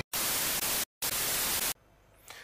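TV static hiss, the sound of an untuned analogue television, in two bursts of under a second each with a brief silent break between them, cutting off sharply near the end.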